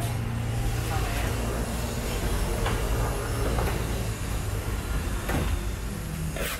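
Steady low hum of background noise, with a few faint short taps from knife work on a plastic cutting board as dragon fruit is peeled.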